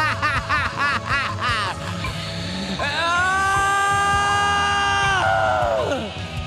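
A man's theatrical vocal laugh: a quick run of about eight 'ha's, each swooping up and down in pitch, then after a short pause one long held high cry that falls away at the end. It sits over a backing track.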